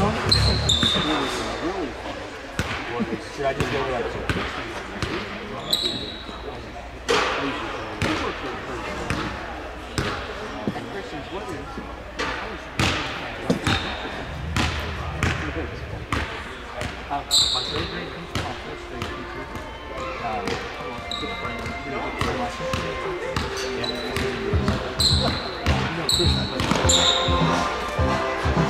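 A basketball bouncing on a hardwood gym floor at an irregular pace, the impacts carrying in a large hall, with a few short high squeaks like sneakers on the court.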